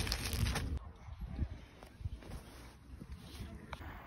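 A man's voice for about the first second, then faint low background noise with a few soft ticks and rustles.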